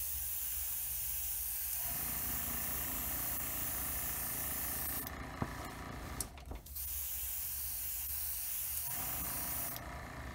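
Black paint being sprayed onto small masked plastic model parts: two long steady hisses of spray, broken by a pause of about a second and a half midway.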